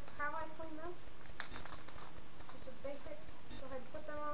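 High-pitched voice-like calls in the background, in the first second and again near the end, with a few sharp crinkles of a plastic bag being slit open with a knife in between.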